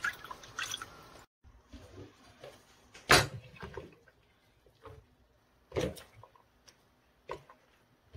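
Hands swishing blanched wild chwinamul greens in a steel bowl of water, then wet squelches and drips as the greens are squeezed out by hand. A few short, sharper sounds stand out, the loudest about three seconds in.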